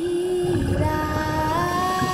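Background music of long held notes that step up in pitch about halfway through, over a low rumble.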